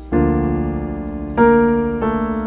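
Piano chords in B-flat major: one chord struck just after the start and held, then a louder chord about a second and a half in, left ringing.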